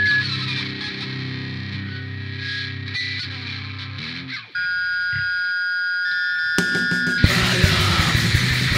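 Powerviolence band recording: distorted guitar chords ring out and end about four seconds in. After a brief drop, steady high-pitched guitar tones hold, then the full band crashes in near the end with very fast drumming and distorted guitar as the next song starts.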